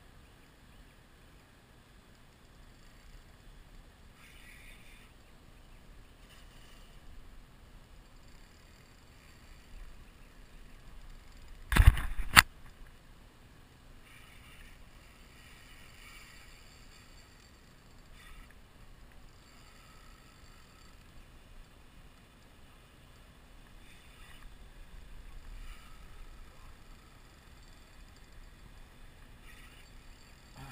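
Faint water lapping against a kayak hull while the boat drifts. About twelve seconds in comes one loud thump lasting about half a second, ending in a sharp click.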